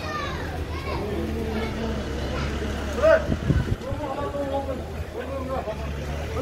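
Voices of people talking in a street crowd, overlapping, over a steady low rumble, with one louder burst about three seconds in.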